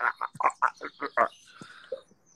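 A man laughing out loud: a quick run of about six short "ha" bursts over a little more than a second, then dying away.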